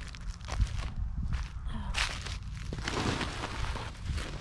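Footsteps on dry leaves and black plastic ground sheeting: a few distinct steps, then a stretch of rustling about two to three seconds in.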